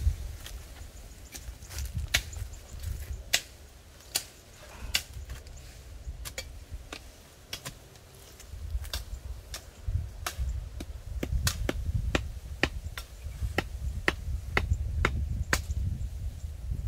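A machete chopping into wood with sharp knocks, about one a second at first and closer together, about two a second, in the last few seconds. A low rumble runs underneath.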